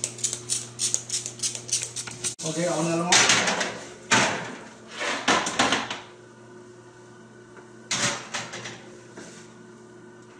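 A hand-pumped oil sprayer misting cooking oil over bacon-wrapped chicken drumsticks in a metal baking tray, a quick run of short hissing sprays. Then metal baking trays clatter and scrape as they are slid onto oven racks, over a low steady hum.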